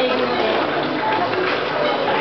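Many voices sounding at once and overlapping, a dense and steady wash of voices.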